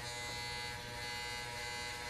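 Electric hair trimmer running with a steady buzz as its blade outlines a design shaved into short hair.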